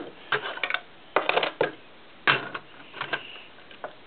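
Small plastic Lego pieces clicking and clattering against a wooden desk in four short bursts of rapid clicks.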